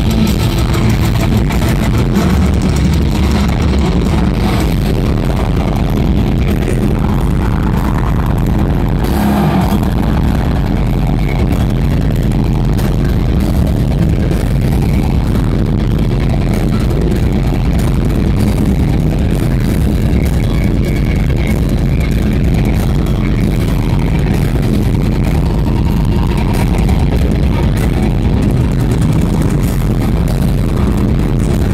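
Heavy metal band playing live with electric guitar, bass and drums, recorded close to the stage so the sound is loud, bass-heavy and distorted.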